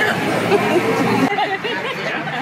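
Several people chatting over one another, with no clear words; the background changes abruptly a little over a second in.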